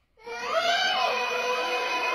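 After a moment of silence, background music sets in about a quarter second in with steady held tones and a short wavering rise-and-fall in pitch near its start.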